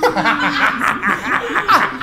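Men laughing hard: a quick, unbroken run of short laughs, each falling in pitch.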